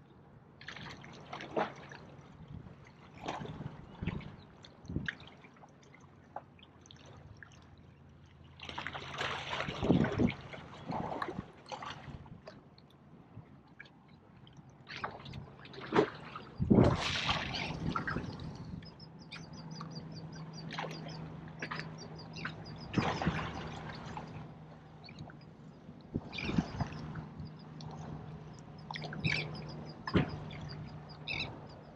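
Small waves lapping and sloshing against shoreline rocks, in irregular surges, with a few stronger washes.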